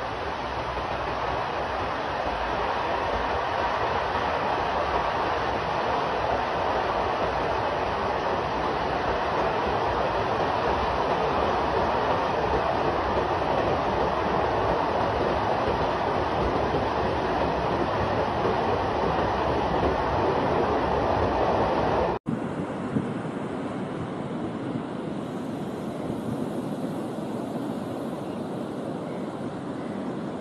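A powerful jet of water gushing from an outlet at the foot of a concrete dam, a loud, steady rush of water. About 22 seconds in it cuts off abruptly and a quieter steady rushing noise follows.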